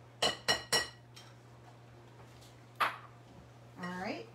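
Three quick clinks, about a quarter second apart, of a ceramic cup knocked against a mixing bowl to empty sour cream from it, then a single clink near the end.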